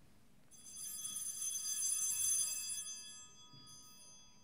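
Altar bell rung at the elevation of the consecrated host during Mass. A high, bright ring that swells for about two seconds and then fades away.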